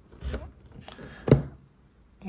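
Small metal parts clicking and scraping as a brass eccentric is pushed onto a model steam engine's steel crankshaft, with one sharp, louder knock past halfway.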